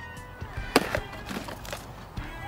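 A sharp plastic knock a little under a second in, followed by a few lighter clicks, as plastic bait trays are handled: a white tray of pellets is set down and a red tray of groundbait is taken up. Faint background music runs underneath.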